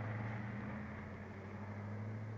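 Steady low hum with an even hiss beneath it.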